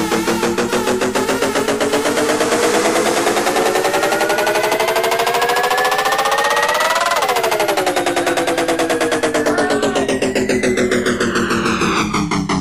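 Techno/tech-house music in a breakdown with the bass dropped out: a synth riser climbs steadily in pitch over rapid repeated pulses, peaks about seven seconds in, then sweeps back down.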